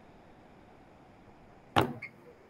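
Faint steady background hiss, then near the end a single short, loud thump.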